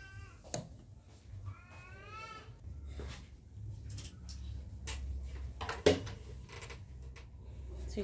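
Clothes and wire hangers handled in a wardrobe: scattered clicks and knocks, the sharpest about six seconds in. Early on there is a short, wavering, high-pitched cry.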